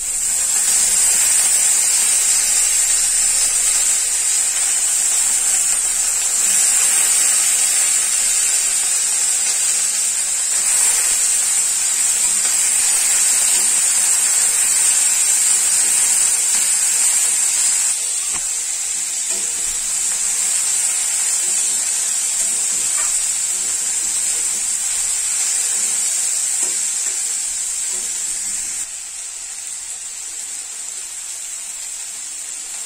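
Chopped vegetable cubes sizzling loudly in hot oil in a kadai, the hiss starting suddenly as they hit the pan. The sizzle settles down in two steps, about two-thirds of the way through and again near the end.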